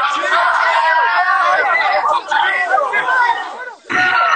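A group of young people shouting and talking excitedly over one another, with a brief lull just before the end.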